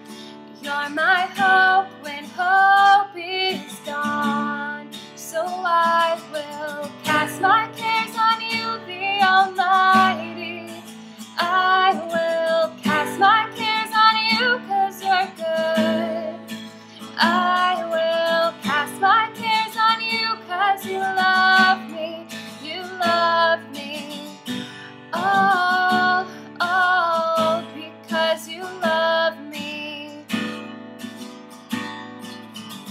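A woman singing a worship song while strumming an acoustic guitar, on B minor, G, D and A chords in a key transposed down two steps. The voice comes in phrases a few seconds long with short breaks, over continuous strumming.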